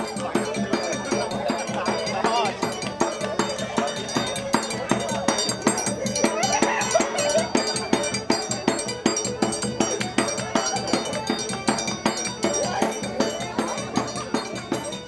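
Live band music with accordion over a steady, evenly pulsing percussion beat, played for a quadrilha dance, with voices mixed in.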